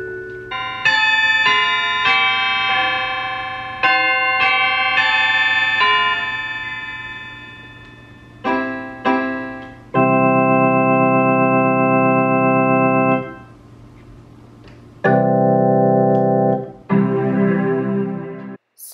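Donner DEP-20 digital piano being played. For the first several seconds it plays a run of separate notes that fade away. It then changes to an organ-like voice with held chords that sustain without fading, the last one wavering.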